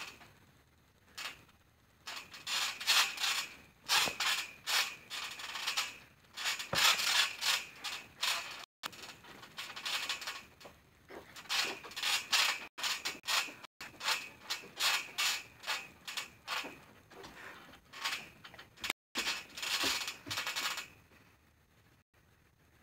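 Trampoline springs creaking and squeaking in quick, irregular bursts as a person hops and shifts his weight on the mat, fading out near the end.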